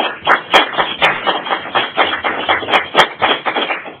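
A small group of people applauding, with individual claps distinct, dying away just before the end.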